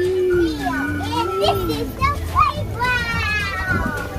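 Children's voices at play: high calls and shouts from several children overlapping. A long wavering tone runs under them through the first half and stops about two seconds in.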